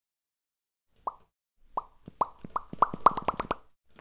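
A run of about ten short pitched pops. They start about a second in and come faster and faster.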